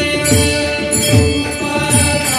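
Marathi bhajan music: many small brass hand cymbals (tal) jingling together over low drum strokes about every three-quarters of a second, with long held melody notes on top.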